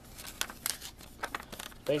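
Clear plastic wrapping crinkling, with a string of small clicks and scrapes as a diecast model car is handled in its packaging.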